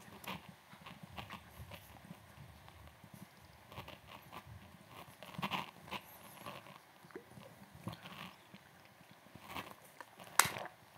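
Faint, irregular clicks and taps of laptop keyboards and trackpads in a quiet room, with a slightly louder cluster about halfway through.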